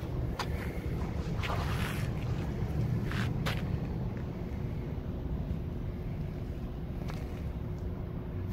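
Steady low outdoor rumble, with a few short rustles and knocks in the first few seconds from a handheld phone being moved around.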